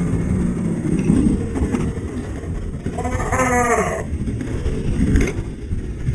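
A man's strained, wordless groan about three seconds in, the effort of an exhausted rider wrestling a fallen dirt bike on a steep slope, over a continuous low rumbling noise; a short knock comes about five seconds in.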